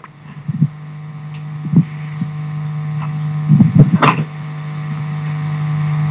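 A steady low hum at one unchanging pitch with many overtones, slowly growing louder. A few brief faint sounds come and go about midway.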